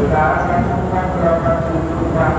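Passenger train at the platform: a loud, steady low rumble, with people's voices over it.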